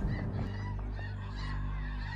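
Short, faint honking calls from a flock of birds flying overhead, over a low, steady drone.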